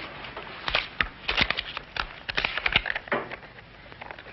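Small clicks and rustles of handling, scattered irregularly, as a sweepstake ticket is brought out and held up.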